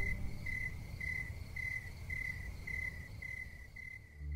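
Cricket chirping steadily, about two chirps a second, over a low rumble that fades away.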